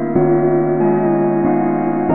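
Ambient music of sustained keyboard tones, the chord shifting to new pitches about every two-thirds of a second.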